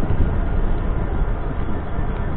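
Steady rush of wind on the microphone mixed with road noise from an electric scooter riding along at speed.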